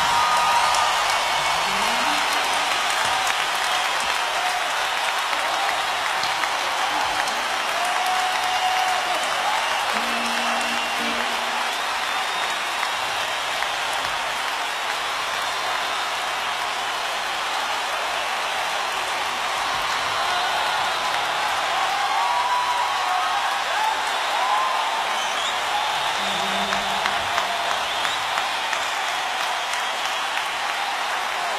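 Large audience in a big hall applauding steadily, a dense even clatter of clapping with scattered shouts rising above it.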